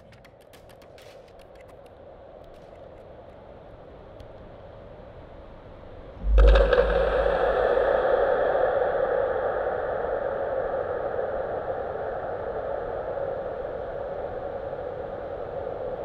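Immersive installation soundscape played over speakers. Faint crackles and a low hiss slowly swell, then about six seconds in a sudden deep thump opens into a loud, steady rushing noise that slowly fades.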